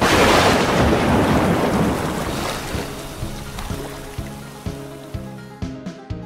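Cartoon lightning strike: a loud thunderclap crash that fades over about three seconds, as background music with a steady beat of about two hits a second comes in.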